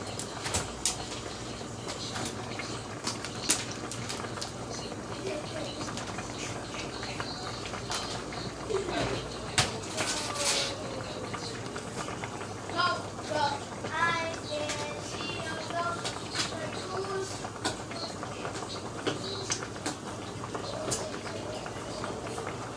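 Faint voices in the background over a steady low hum, with scattered light clicks and knocks.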